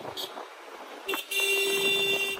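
A vehicle horn sounds one steady honk of about a second and a half, starting about a second in and cutting off sharply, over faint city traffic.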